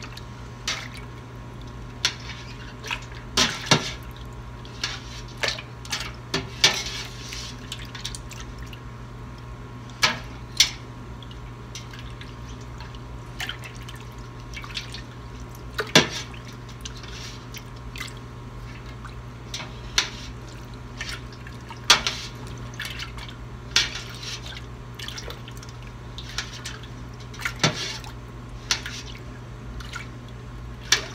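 A metal spoon stirring mozzarella curds in warm whey in a stainless steel stockpot, pressing them against the side of the pot to help them knit together. There is soft splashing and dripping of whey and irregular sharp clinks of the spoon against the pot, over a steady low hum.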